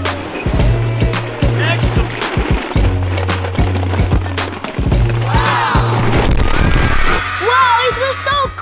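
A shower of plastic ball-pit balls pours down and clatters as the balls bounce and scatter across a tiled patio, over background music with a steady bass line. Children shout excitedly partway through and again near the end.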